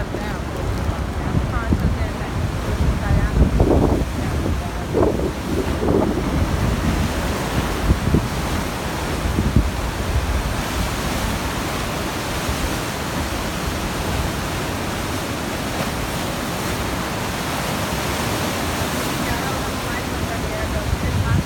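Rough sea surf breaking and rushing, heard as a steady hiss that fills the second half. Through the first half, wind buffets the microphone with a low, gusty rumble.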